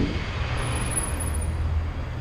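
BMX bike tyres rolling over asphalt, a steady low rumble.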